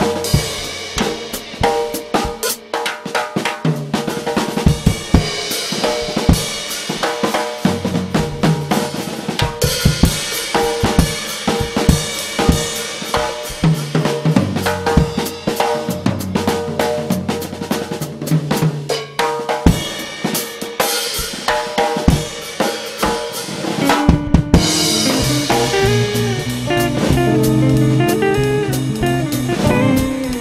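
Live instrumental band: a drum kit played busily with fast snare, tom, bass-drum and cymbal strokes over an electric bass line. About six seconds before the end the rapid drumming thins out and held bass notes and cymbal wash take over.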